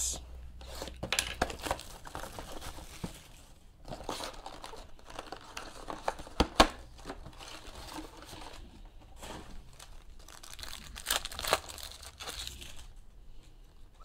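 A 2014-15 Panini Select Basketball hobby box being torn open and its foil card packs pulled out and handled, crinkling and rustling, with sharper rips now and then.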